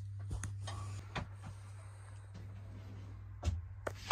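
Quiet interior with a steady low hum and a few soft knocks and rustles, the clearest about three and a half seconds in.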